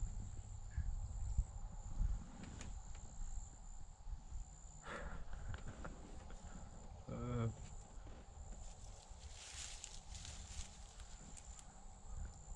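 Quiet woodland ambience: a low rumble and a steady faint high-pitched whine, with a few brief faint sounds, the clearest a short pitched cry about seven seconds in.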